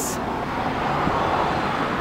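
A car passing by: a steady rush of tyre and road noise that swells a little and then eases.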